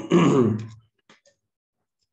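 A man clearing his throat once, harshly, for just under a second, followed by a few faint keyboard key clicks.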